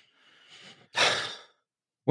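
A man sighing: a faint intake of breath, then a louder breathy exhale about a second in that fades out over half a second.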